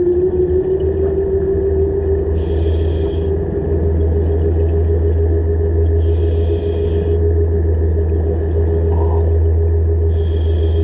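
Dive Xtras Blacktip underwater scooter running submerged: a steady motor-and-propeller whine over a low hum, its pitch creeping up slightly during the first couple of seconds. Bursts of regulator exhaust bubbles come roughly every three and a half seconds.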